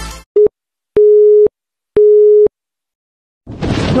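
Telephone busy-signal tone: a brief beep, then two half-second beeps one second apart, all at the same steady pitch with silence between them.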